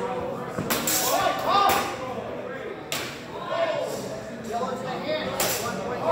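Several sharp clacks and strikes of steel longswords meeting and hitting padded gear during a sparring exchange, with voices in a large echoing hall.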